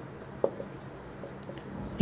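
Marker pen writing on a whiteboard: faint scratchy strokes, with a short tap about half a second in.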